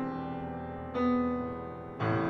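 Upright piano playing slow chords: a chord rings as it fades, and a new chord is struck about a second in and left to die away.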